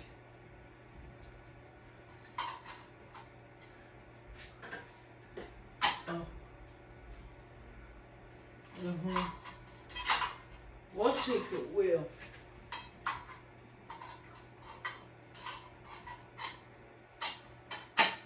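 44-inch Hunter ceiling fan running with a steady low motor hum, under scattered sharp clinks and knocks of metal parts being handled every second or two.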